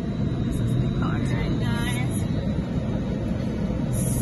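Steady low rumble of a car's engine and road noise heard from inside the cabin, with faint voices in the background.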